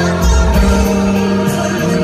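Live rock band playing a slow anthem, with bass, electric guitar, drums and cymbals under a male lead singer, heard loud from among the audience in a hall.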